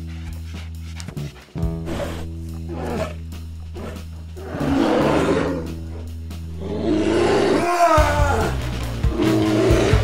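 Film score with sustained low bass notes, over which come three loud, rough roars: about halfway through and twice more near the end.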